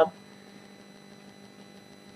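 Faint, steady electrical mains hum with a few thin high steady tones over it, the background of the voice recording heard in a pause between spoken phrases.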